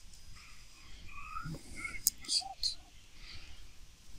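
A few faint, sharp computer mouse clicks about two seconds in, over a quiet room with some faint, indistinct voice sounds.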